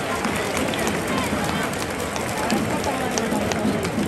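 Baseball crowd in a domed stadium, many people talking at once in a steady murmur, with a few sharp claps scattered through it.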